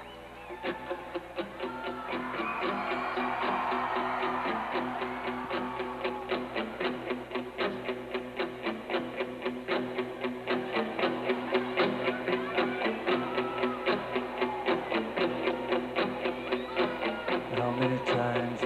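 Live rock band playing an instrumental intro: electric guitar with bass, piano and drums, held low notes under a steady pulse of about three strokes a second. It starts softly just after the opening and builds in loudness over the first few seconds.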